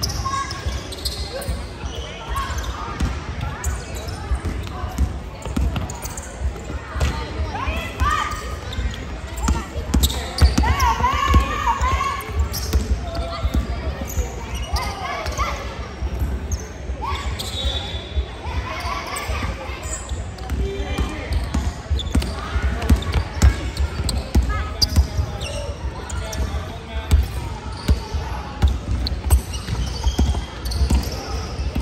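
Basketballs bouncing on a hardwood court in a large, echoing sports hall, with players' and onlookers' voices mixed in.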